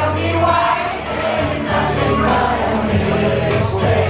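Karaoke: men singing into microphones over a loud amplified pop backing track, with many voices from the bar crowd singing along.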